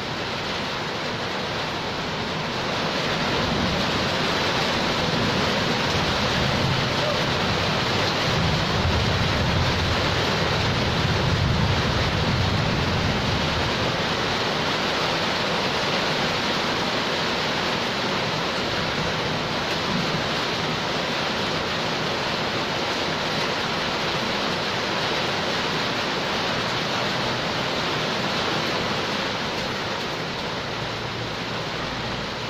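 Heavy rain pouring steadily onto a concrete yard and nearby roofs: a loud, even hiss that swells slightly a few seconds in.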